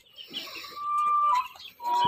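A chicken's drawn-out, high-pitched call, held for about a second with a slight drop in pitch at its end, and a second call starting near the end.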